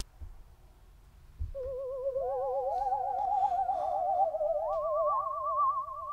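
Spooky theremin-style sound effect: several eerie wavering tones with a strong vibrato, overlapping and stepping upward in pitch, beginning about a second and a half in.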